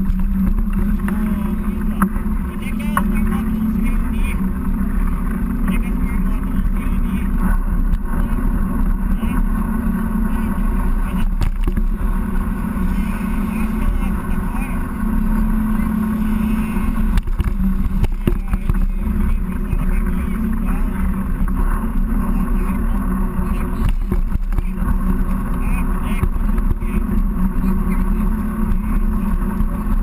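Loud, steady wind rush and rumble on a chest-mounted action camera as a mountain bike rolls along at speed.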